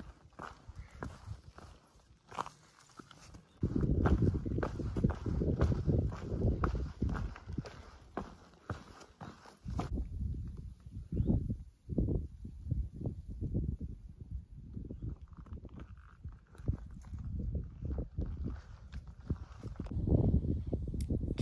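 A hiker's footsteps on a trail, an irregular series of steps with low rumbling noise on the microphone. The steps are densest and loudest from about four seconds in to about ten, then come as sparser single steps.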